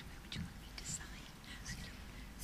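Faint whispered talk picked up by a table microphone, with low room tone.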